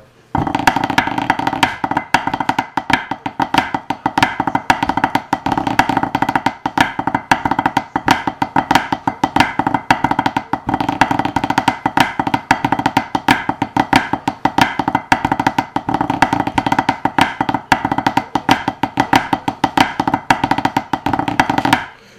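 Pipe-band snare drum part played with wooden drumsticks on a practice pad: a fast, continuous run of crisp stick taps with rolls and accents. It starts just after the opening and stops just before the end, over a steady tone.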